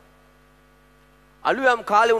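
Faint steady electrical hum of several held tones from the sound system during a pause in speech, then a man's amplified voice resumes about one and a half seconds in.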